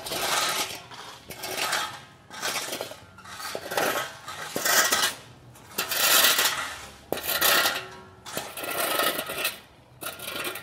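Steel shovel scraping across a road surface and scattering loose asphalt chippings, in repeated strokes about once a second.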